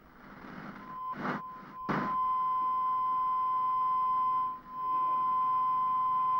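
Broadcast test tone: a single steady beep of the kind sent with a TV test card. It comes in about a second in over a rise of static hiss with two short crackles, and briefly drops out a little past the middle.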